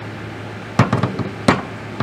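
Short AR-pattern firearm with a folding adapter being handled on a table: a sharp knock just under a second in, a couple of lighter clicks right after, and another sharp knock about a second and a half in.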